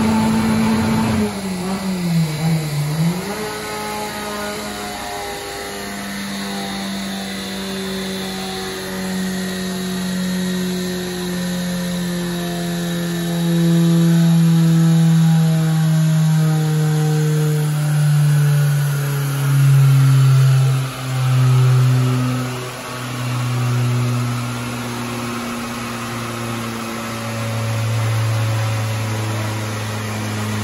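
Naturally aspirated 1991 Fiat Uno 1.6R four-cylinder engine held at high revs on a chassis dynamometer at the end of a top-speed run. About a second in the throttle is lifted, and the revs then fall slowly as the car coasts down on the rollers, with a few swells in level midway.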